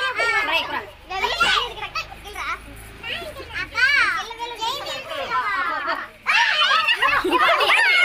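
Children shouting and calling out over one another, with a quieter spell early on and a louder burst of voices about six seconds in.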